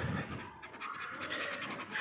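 Finger scratching the silver coating off a paper lottery scratch card in rapid short strokes.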